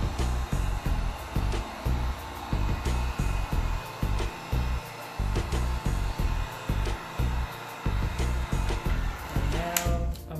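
Handheld heat gun blowing steadily over freshly poured epoxy resin in a silicone coaster mold, with background music carrying a steady bass beat throughout.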